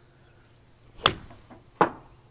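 Pitching wedge striking a Vice Pro Soft golf ball off a hitting mat with a sharp crack about a second in, followed by a second sharp knock near the end.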